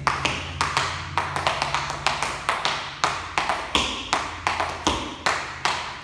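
Tap shoes striking the floor in a quick, uneven run of crisp taps, about five a second. The dancer is working slowly through a step-step-hop-touch-ball-change combination.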